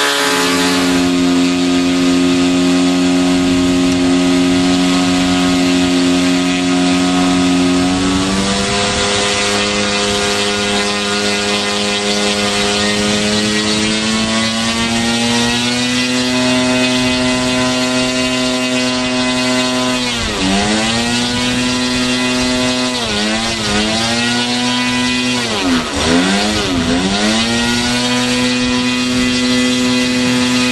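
15 cc O.S. model aircraft engine in a large radio-controlled biplane, running with its propeller on the ground. The speed holds steady at first, steps up about eight seconds in and creeps higher for a few seconds more. Near the end the throttle is cut and opened again several times, each a quick dip and rise in pitch.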